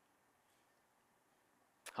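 Near silence: faint room tone. A man's voice starts just at the end.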